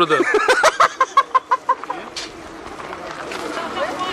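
A person's voice: a quick run of short, evenly spaced staccato sounds in the first two seconds, then a quieter stretch of background noise.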